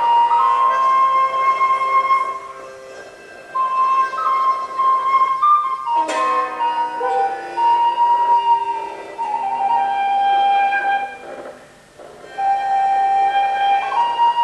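Music: a slow, improvised melody of long held notes on flute-like wind instruments, in phrases with short pauses between them. A single sharp click sounds about halfway through.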